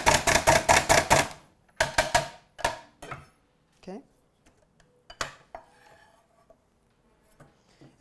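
Hand-pressed plunger food chopper being pumped rapidly on a hard-boiled egg: sharp repeated clacks, about six a second, stopping a little over a second in. Several separate knocks and clicks follow.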